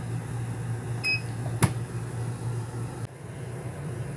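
Electric pressure cooker's control panel giving one short high beep about a second in as a button is pressed, followed by a single sharp click, over a steady low hum.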